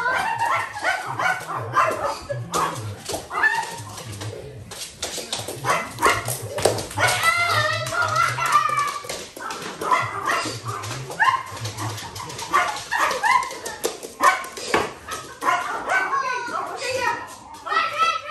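Several dogs barking and yipping in excited play, in short bursts throughout, mixed with people's voices.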